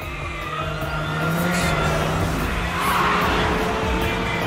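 Racing engines of two Mazda RX-7 sports cars running hard at high revs, with tyre squeal swelling about three seconds in as the cars take a corner.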